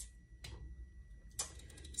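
Two faint, short clicks about a second apart over a low steady room hum.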